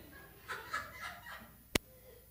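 A few short, faint high-pitched children's voices in a large room, then a single sharp click near the end.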